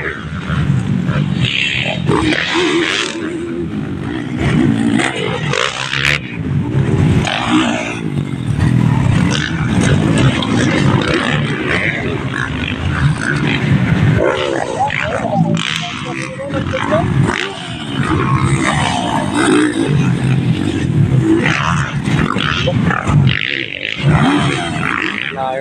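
Motocross dirt bike engines running and revving hard around the track, rising and falling as the bikes pass, mixed with spectators' voices.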